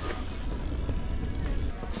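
Steady rumbling noise of strong wind buffeting the ice-fishing hut.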